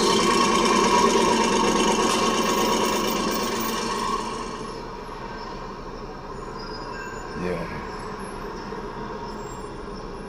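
A rough, rasping noise from the music video's soundtrack playing back. It is loud for about the first four seconds, then settles to a quieter steady hiss.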